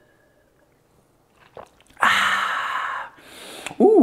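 A man drinking, quiet at first, then a small mouth click about a second and a half in, followed by a loud breathy 'ahh' exhale lasting about a second after he swallows, trailing off into softer breathing.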